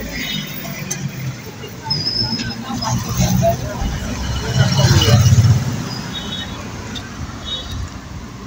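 Street traffic with motorcycles passing close, loudest about five seconds in, over background voices.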